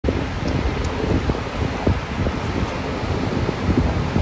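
Wind buffeting the microphone over the steady rush of ocean surf breaking on a beach.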